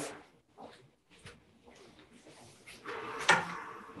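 Handling and movement sounds as a person sits back down in a desk chair: a few faint clicks, then rustling and a sharp knock a little past three seconds in.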